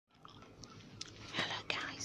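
Soft mouth and breath noises close to the microphone: a few faint clicks, then two breathy bursts in the second half, with no voiced words.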